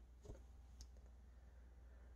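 Near silence: room tone with a low hum and two faint clicks.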